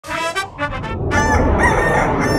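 A rooster crowing cock-a-doodle-doo: a few short notes, then one long drawn-out call starting about a second in, over a low music bed.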